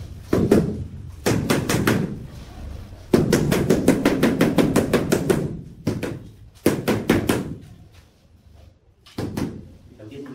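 Rubber mallet tapping a large ceramic floor tile down into a wet mortar bed, in quick runs of strikes. The longest run of rapid taps comes near the middle and lasts about two and a half seconds; shorter bursts come near the start and towards the end.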